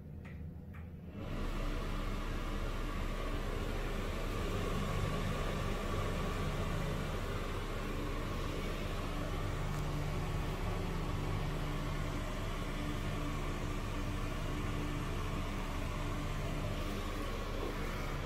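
Broan Invent series bathroom exhaust fan with a squirrel-cage blower switched on about a second in, then running with a steady rush of air and a low motor hum.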